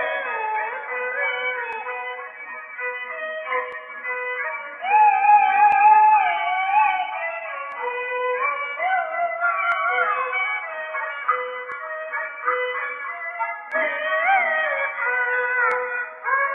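Peking opera accompaniment led by a bowed jinghu fiddle playing a winding melody, heard through an old gramophone recording with a narrow, dull top end.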